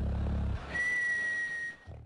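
A man miming sleep with a cartoon-style snore: a low rasping snore ends about half a second in, followed by one steady high whistle on the out-breath lasting about a second and falling slightly in pitch.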